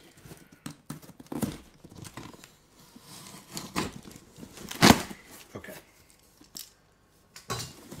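Cardboard parcel being cut and torn open with a small blade: scattered scraping, rustling and clicks, with a sharp knock about five seconds in.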